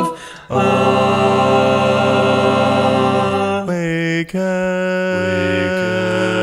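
Six-voice a cappella vocal ensemble singing sustained, chant-like chords. The sound drops out briefly just after the start, and the voices waver and shift chord around four seconds in before a sudden cut, then settle on a new held chord.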